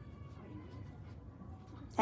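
Quiet indoor room background: a faint, steady low hum with no distinct sound event. A woman's voice rises in pitch right at the end.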